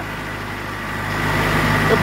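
Mahindra Arjun 555 DI tractor's diesel engine running steadily as the tractor creeps forward in first gear of the high range, getting a little louder toward the end.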